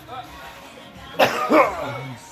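A person coughing hard, two coughs in quick succession about a second in, over faint background music.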